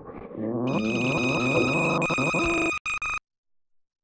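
A strained, distorted voice-like cry under a shrill, steady ringing tone, swelling loud for about two seconds. It stutters briefly and then cuts off abruptly into silence about three seconds in.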